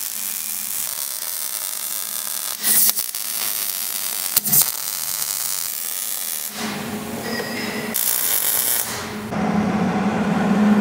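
Electric welding arc crackling and hissing in runs of several seconds with short breaks, as steel mounting plates and brackets for a viscous coupler are tack welded under a car.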